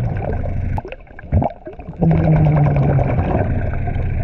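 Diver breathing through a dive regulator underwater: a long exhale of rushing bubbles, a quieter gap with a short inhale about a second and a half in, then a second, longer exhale of bubbles.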